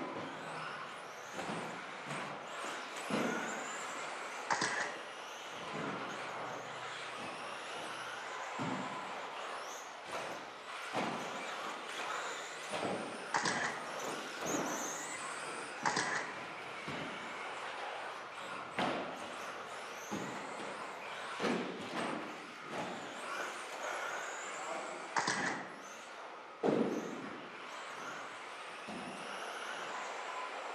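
Electric 2WD RC buggies racing: their motors whine up and down in pitch as the cars accelerate and brake. Sharp knocks come through at irregular intervals as the cars land jumps and hit the track, with one of the loudest near the end.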